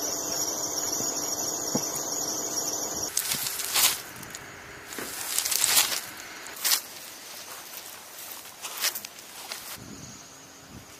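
A steady high whine over a low hum, which cuts off suddenly about three seconds in. Then several short swishes of nylon parachute canopy and lines being pulled and gathered by hand.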